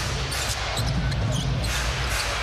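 A basketball being dribbled on a hardwood court, with short high sneaker squeaks, over the steady noise of an arena crowd.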